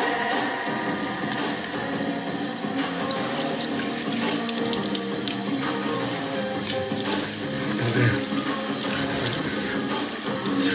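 Tap water running steadily into a bathroom sink, with a few splashes as water is scooped onto a face.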